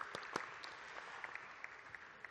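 Audience applause thinning out and fading away, with a few sharper single claps standing out from the patter.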